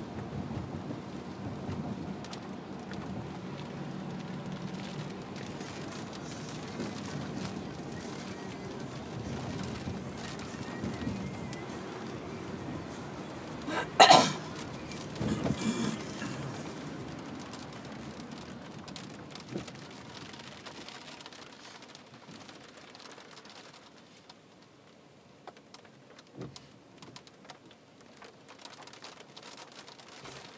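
Rain on a car's roof and windshield with road noise, heard from inside the moving car's cabin; the steady noise drops off about two-thirds of the way in. A short, sharp loud burst stands out about halfway through.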